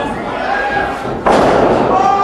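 A wrestler's body slamming onto the ring mat: one heavy thud a little past a second in, over shouting voices from the crowd.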